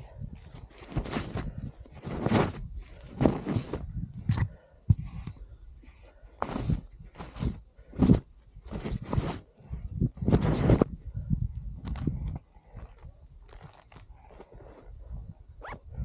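Deep powder snow crunching and swishing in irregular bursts as a person crawls and pushes through it on hands and knees. The bursts come thick through most of the stretch and thin out toward the end.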